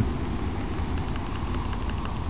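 Steady low background hum with an even haze of noise and no clear events.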